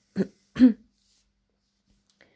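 A woman clearing her throat: two short sounds within the first second.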